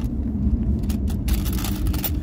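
Coins clinking and sliding against each other and the sides of a metal tin as fingers dig through a loose pile, a few sharp clinks about a second in, over a steady low rumble.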